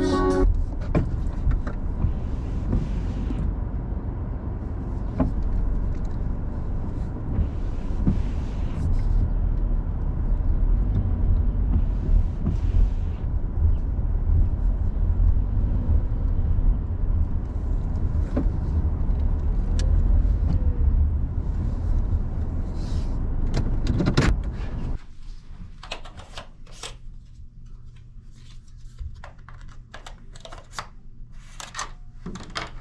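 Car cabin noise as the car drives slowly: a steady low engine and road rumble. About 24 seconds in there is a sharp click, and the sound drops to a much quieter stretch with scattered clicks and knocks.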